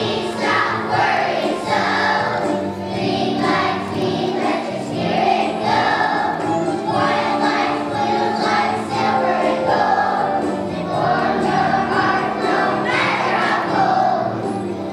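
Choir of first-grade children singing a song together.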